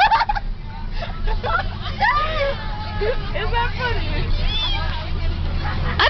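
Girls laughing and vocalising with a babble of voices, over the steady low rumble of a bus engine.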